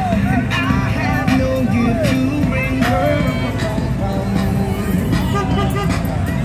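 Polaris Slingshot three-wheeled roadsters rolling slowly past one after another, a steady low engine rumble, mixed with loud music and crowd voices.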